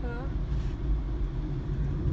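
Steady low rumble of a car in motion, engine and tyre noise heard from inside the cabin.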